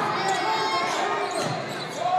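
Basketball game play: a ball bouncing on the court amid short, high squeaks and a hubbub of voices.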